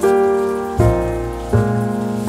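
Calm jazz-blues instrumental with sustained keyboard chords, a new chord struck about every three-quarters of a second.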